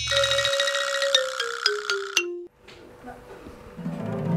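A short electronic jingle of notes stepping down in pitch one after another, with sharp clicks, lasting about two and a half seconds. After a brief lull, background music starts near the end.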